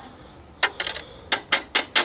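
Metal spoon scraping and knocking inside a stainless steel box grater to get out the grated orange zest: a series of short, sharp metallic clicks.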